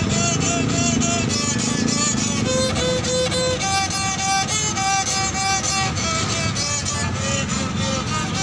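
Homemade wooden fiddle, held upright and bowed with a long stick bow, playing a melody of held notes, some with vibrato.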